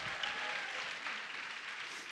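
Congregation applauding, dying away slowly.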